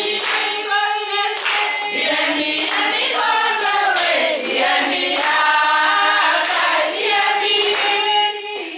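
A group of voices, mostly women, singing together unaccompanied, with hand clapping along.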